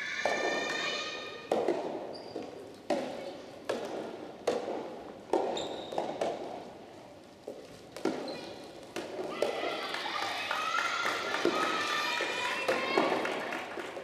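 A rally of soft tennis: about nine sharp strikes and bounces of the rubber ball, roughly one a second, echoing in a large hall. From about nine seconds in, voices call and shout as the point ends.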